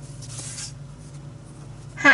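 A pen drawn along a plastic ruler across paper, ruling a short line with a scratchy stroke in the first part, then fainter rustle as the ruler is lifted off the page.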